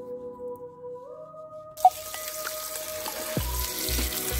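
Background music, joined a little before halfway by tap water running steadily onto shredded cabbage being rinsed in a steel pot.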